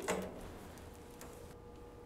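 Quiet handling of a hinged steel electrical switch-box cover being swung open, with no sharp click or knock, over low room tone and a faint steady hum.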